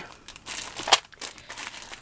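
Small clear plastic zip-lock bag of metal beads crinkling as it is handled, with one sharper crackle about a second in.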